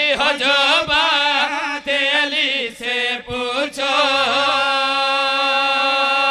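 A man's voice chanting a line of a devotional qasida in an ornamented, melodic style, ending in a long held note with a slow waver from about four seconds in.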